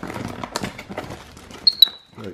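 Paper and cardboard rustling and crackling as tissue wrapping is pulled from a plasma lamp box, then two short high squeaks near the end, the peeps of a capuchin monkey.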